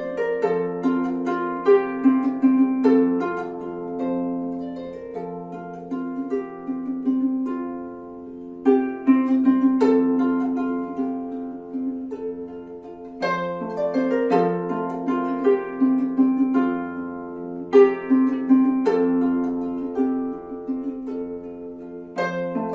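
Solo Celtic harp played by hand: a plucked melody with ringing strings over sustained low bass notes, in phrases that return every four seconds or so with a stronger attack.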